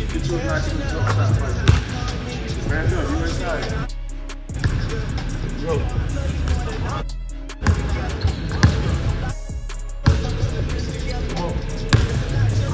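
A basketball bouncing on a hardwood gym floor, a few sharp bounces, over background music and indistinct voices. The sound cuts out briefly three times.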